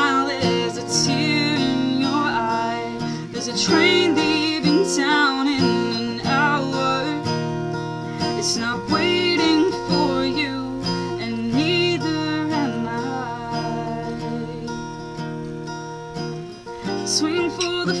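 Acoustic guitar strummed in a slow, steady accompaniment, with a woman's voice singing held, wavering notes over it in phrases a second or two long.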